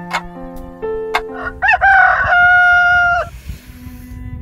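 A rooster crows once, loud and long, starting about a second and a half in, over soft plucked notes of background music.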